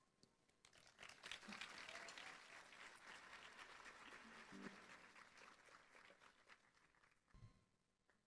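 Faint audience applause, starting about a second in and dying away toward the end, followed by a brief low thump.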